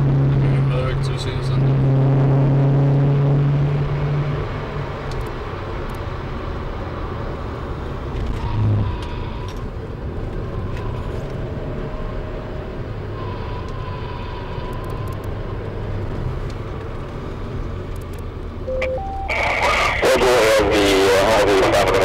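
Cabin engine and road noise in a SAAB 9-5 Aero police car slowing down, with a steady low engine drone for the first four seconds or so. Just before the end a short two-tone beep sounds, then a voice comes in loud over the police radio.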